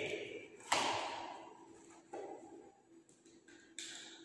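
A single sharp knock on the table about a second in, with a ringing room echo, then a softer knock and faint handling sounds as a plastic reagent bottle is taken from its kit box and its cap worked open.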